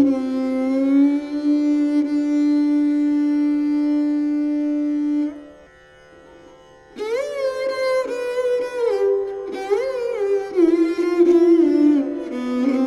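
Taus (mayuri veena), a bowed fretted string instrument with sympathetic strings, playing an alap-style passage in Raag Bageshri. It holds one long note for about five seconds, pauses briefly, then plays phrases that slide between notes.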